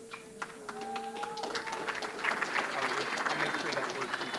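Audience applauding, the clapping building up from about a second and a half in and strongest in the second half, with some voices mixed in.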